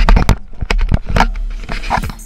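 Rapid knocks, rubs and clicks of a hand handling a small action camera right against its microphone, starting suddenly and loudly.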